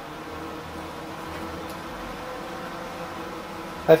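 Steady machine hum over a hiss, with a few faint steady tones and no change in level.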